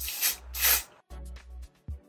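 Aerosol lace-melting spray can giving two short hissing bursts in quick succession onto a wig's lace, over background music with a steady beat.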